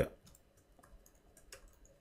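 Computer keyboard keys clicking as a few characters of code are typed: one sharper click right at the start, then faint, scattered key clicks.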